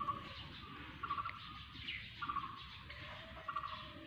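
Birds calling: one bird repeats a short call about once a second, four times, with fainter chirps from other birds around it.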